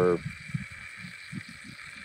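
A pause in speech: a faint steady hiss with a thin high tone, and a few soft low thumps.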